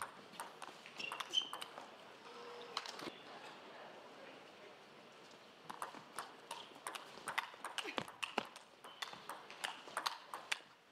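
Table tennis ball clicking on the table and off the bats. There are a few scattered clicks early on as the ball is bounced before the serve, then a rally of quick, irregular clicks from a little past halfway.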